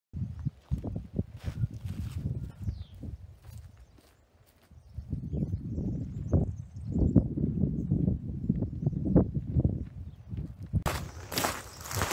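Footsteps walking along a dirt and grass path, a run of irregular low thuds that breaks off briefly about four seconds in and then comes back steadier and louder.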